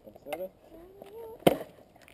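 A person's voice wavers through a few sung or hummed notes, then a single sharp, hard knock about one and a half seconds in.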